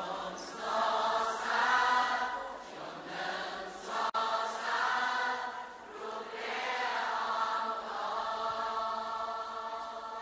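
Several voices singing a Khmer worship song in long, held notes, easing off in loudness near the end.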